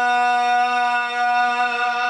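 A zakir's voice holding one long, steady chanted note through a microphone and PA, with a slight waver in pitch near the end.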